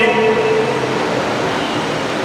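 Steady rushing background noise, even and unbroken, in a pause in a man's speech at a microphone; the tail of his voice fades out in the first half second.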